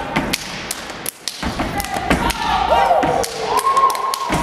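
Step team stepping: sharp foot stomps and hand claps struck in a quick pattern on a stage. In the second half a voice calls out a long, sustained note over the beats.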